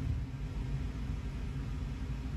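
Low, steady background rumble with a faint hiss above it.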